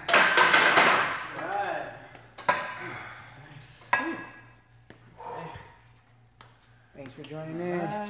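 A man straining and exhaling hard as a set of close-grip barbell bench press ends, with a loud burst as the loaded barbell goes back onto the rack. This is followed by two sharp metallic clanks, a couple of seconds apart, from the bar and plates.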